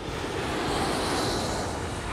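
Whooshing transition sound effect: a rush of noise that swells up and then fades away over about two seconds.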